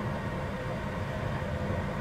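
Steady low rumble inside a car cabin, typical of the car idling, with a faint steady hum.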